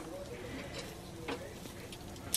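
Faint steady hiss of a portable propane grill cooking hot dogs, with one light click, as from metal tongs, a little past a second in.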